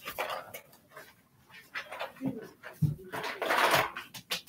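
Packaging and items being handled, with scattered short rustles and a louder rustling burst near the end. Two brief, low voice-like sounds come in the middle.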